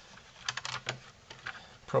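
A quick run of light clicks and taps about half a second in, then a few single ticks, as hands handle a laptop's metal heatsink and fan assembly on its motherboard.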